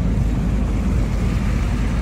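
Pickup truck driving, heard from inside the cab: a steady low rumble of engine and road noise.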